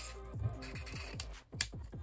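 A plastic screw cap being twisted open on a fizzy-drink bottle, giving a few sharp clicks, over background music with a beat.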